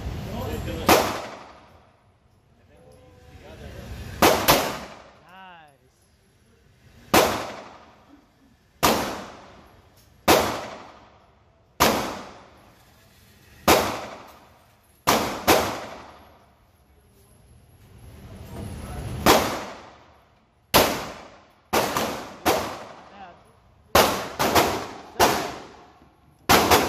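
9mm pistol shots echoing in an indoor range: about twenty sharp reports, one to two seconds apart, coming faster near the end. They include a first-time shooter's five shots from a Glock, fired until the slide locks back empty, and others from neighbouring lanes.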